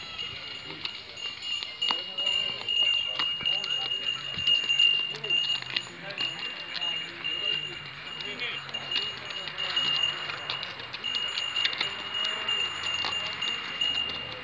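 Outdoor market bustle: distant voices murmuring and a donkey's hooves stepping on gravel, under a steady high-pitched ringing tone that runs throughout with brief breaks.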